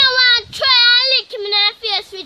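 A young girl's high-pitched voice, speaking loudly in drawn-out, sing-song syllables.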